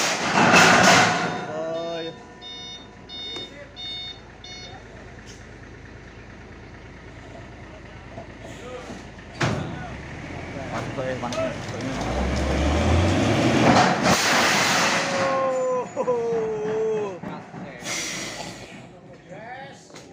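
A load of 12-metre IWF steel beams sliding off the back of a truck and dropping onto the ground: a sharp clank about halfway through, then a long, loud scraping crash with a deep rumble, and another burst near the end. Early on, a truck's warning beeper sounds in short repeated beeps.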